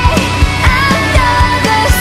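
Hard rock band track playing: drums keep a steady beat of about four hits a second under a sustained, bending lead melody line.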